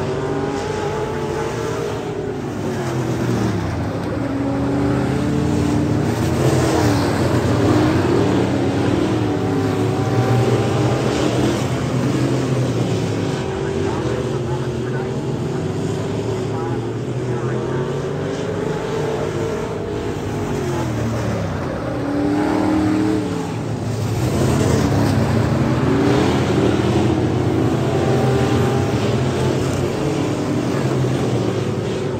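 Several dirt-track limited modified race cars running laps, their engines revving up and easing off as they pass, with several engines heard at once and the pitch rising and falling again and again.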